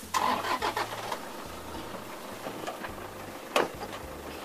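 Pickup truck engine cranking and catching in the first second, then running steadily, with a single loud knock on the truck body near the end.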